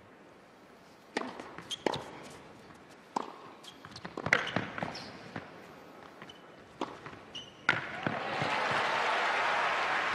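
Tennis ball bounced twice on an indoor hard court, then a serve and rally of sharp racquet-on-ball hits a second or so apart. After the last shot, about eight seconds in, crowd applause and cheering swell up loudly as the point is won.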